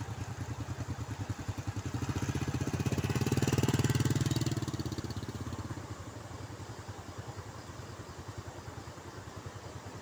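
Small motorcycle engine running with a fast, even beat. It grows louder around three to four seconds in, then fades back to a lower, steady running.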